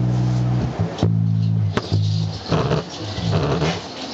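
Live band music led by an electric bass: long held low notes for the first two seconds, with a sharp click partway through, then a regular rhythmic pattern of shorter notes and hits, about two a second.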